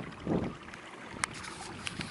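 Low, steady noise of a canoe moving across a pond, with wind on the microphone, a short low swell about a quarter second in and two light clicks in the second half.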